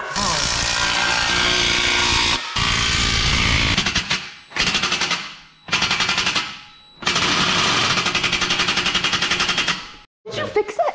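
Cordless impact driver hammering in rapid bursts: one long run of about four seconds, two shorter bursts, then another long run near the end.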